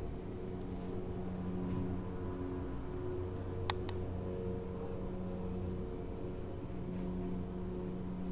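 Steady low mechanical hum of room noise, with two sharp clicks in quick succession a little before halfway through.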